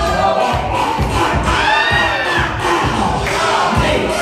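Loud DJ dance music with a steady beat, over a crowd of spectators cheering and shouting. A long, drawn-out voice rises and then falls in pitch about halfway through.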